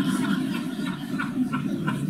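A roomful of people laughing and murmuring after a joking question.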